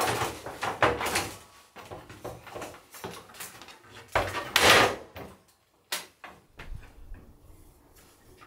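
Knocks and scrapes of a large flat board and work boots against an aluminium scaffold tower as it is climbed, with a longer, louder scrape about four seconds in and a few lighter knocks after.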